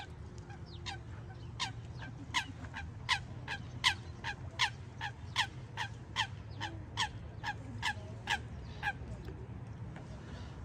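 A bird calls a long, regular series of sharp notes, each falling quickly in pitch, about two to three a second. The series starts about a second in, is loudest near the middle and stops shortly before the end, over a steady low outdoor rumble.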